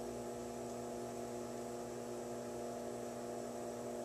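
Steady electric hum made of several held tones: the potter's wheel motor running while the wheel spins.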